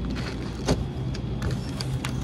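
Grocery items set down and handled on a store checkout counter: a few light knocks and packaging rustles over a steady low hum.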